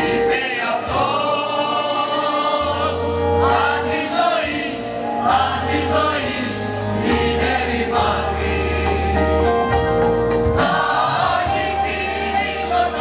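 Mixed choir singing in parts, with keyboard and accordion accompaniment: sustained sung chords over low bass notes that change every second or two.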